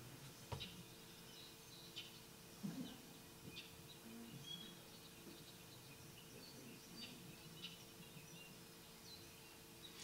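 Faint recorded song of several bobolinks, played back in a room: a scatter of short, high, jumbled notes over a steady low hum.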